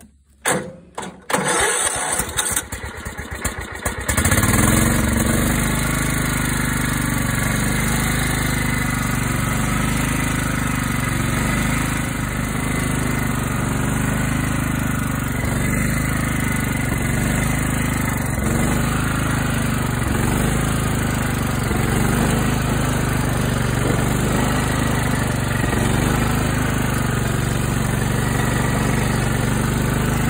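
Riding lawn mower's engine being started: the starter cranks in short surges for the first few seconds and the engine catches about four seconds in, then runs steadily.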